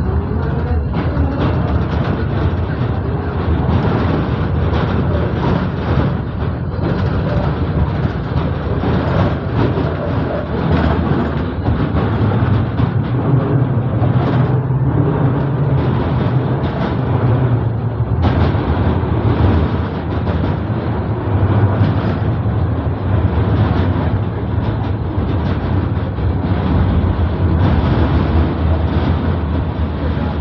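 Moderus Gamma LF 03 AC low-floor tram running, heard from the driver's cab: a steady hum from the traction drive with rumble from the wheels on the rails, as the tram moves off from a stop and travels on.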